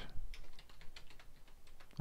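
Typing on a computer keyboard: a quick run of keystroke clicks at the start, then a few sparser, fainter taps.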